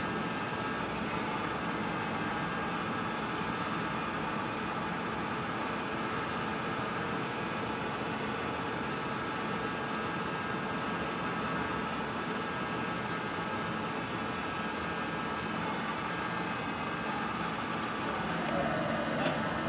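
A steady mechanical drone with faint steady whining tones, unchanging throughout.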